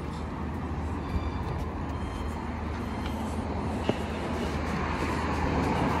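Road traffic noise: a steady rumble of vehicles that grows a little louder near the end, with one small click just before four seconds in.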